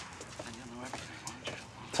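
A faint murmured voice and a few soft clicks over quiet room tone.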